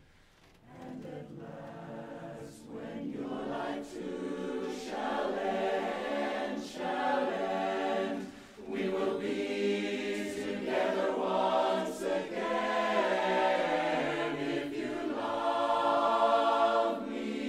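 Mixed barbershop chorus of men's and women's voices singing a cappella in close harmony. The singing comes in after a brief pause at the start and builds louder toward the end.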